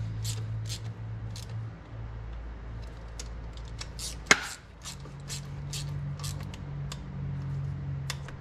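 Quarter-inch drive ratchet clicking in short, irregular strokes as the fuel rail bolts are tightened by hand, with one louder click about four seconds in. A steady low hum runs underneath.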